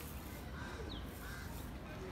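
A few faint, short bird calls, arched and gliding, over a steady low background rumble outdoors.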